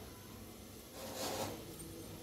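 A faint, soft scrape about a second in, a serving spoon scooping thick custard from the pot, over quiet room tone.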